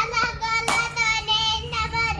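A child singing a line in a high voice, in short held notes, with a sharp click about a third of the way through.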